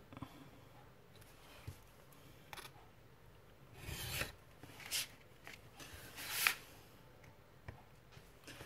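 Craft knife cutting scrapbook paper along a metal ruler on a cutting mat: a few short rasping strokes around four, five and six seconds in, the last one longest, with a few light taps of the ruler and paper between them.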